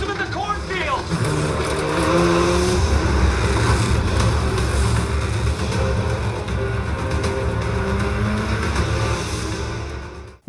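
An action-film soundtrack played through a JBL Bar 1000 soundbar. A brief spoken line near the start gives way to a dense, bass-heavy mix of vehicle noise and score.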